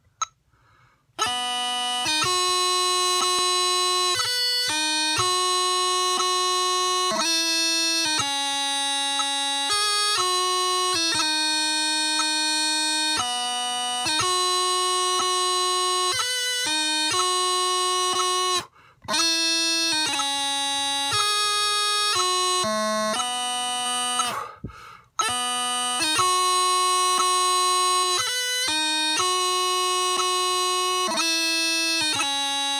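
Bagpipe chanter played on its own without drones, a melody of clear, buzzy reed notes starting about a second in. The tune breaks off briefly twice, about two-thirds of the way through.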